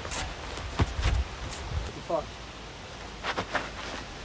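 A few short thumps and scuffs of feet on dry ground and of bodies making contact as a high kick is thrown and countered with a step-in clinch, in two clusters about a second in and past the three-second mark.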